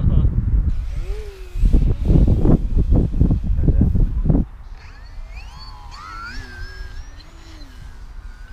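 Loud low rumbling noise for the first four and a half seconds. Then the thin whine of an electric RC plane's motor and propeller, with several tones rising in pitch for a couple of seconds.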